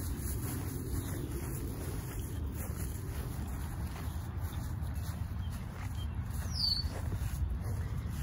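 Outdoor ambience dominated by a steady, uneven low rumble of wind on the microphone, with one short high falling chirp near the end.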